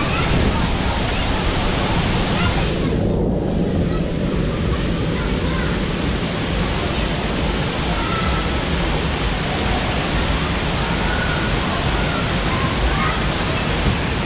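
Steady rush of water running down the slides and splashing from the play structure, with distant voices of bathers.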